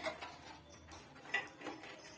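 A few light, irregular clicks and metallic taps from hands handling the metal pipes and fittings of a disassembled gas water heater.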